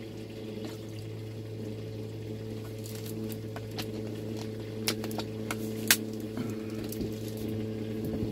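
A steady low hum runs underneath. Over it come a string of sharp clicks and small knocks, bunched from about three to six seconds in and loudest near six seconds, from handling the nutrient bottles and cup while dosing the water.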